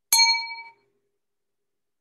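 A single bright ding: a sharp strike with several ringing tones that fades out in under a second.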